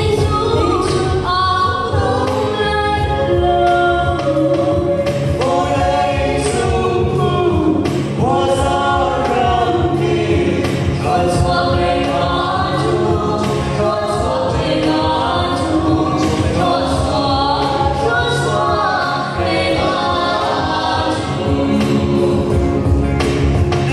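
A choir singing a Christmas gospel song in Lai, a Chin language, with several voices moving together in sustained melodic lines.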